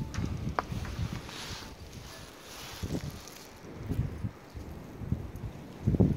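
Footsteps trudging through deep fresh snow: soft, irregular low thuds and crunches, more frequent in the second half.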